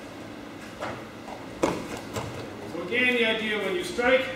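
A few short thumps and slaps of bodies, hands and feet on the dojo's foam mats as an aikido technique is demonstrated; the loudest comes about one and a half seconds in. Near the end a man's voice sounds for about a second.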